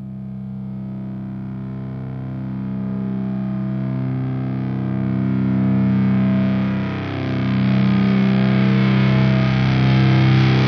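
Rock song intro: sustained, distorted electric guitar chords swelling in from silence, with one chord change about seven seconds in.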